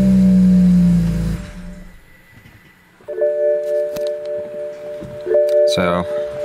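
BMW 335i's N54 twin-turbo straight-six just after starting on the swapped-in MSD81 DME: the engine note rises and then falls back, and it is gone about a second and a half in. Steady held music tones run underneath and carry on on their own from about three seconds in.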